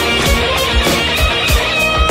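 Live rock band playing an instrumental passage: electric guitar over a steady drum beat.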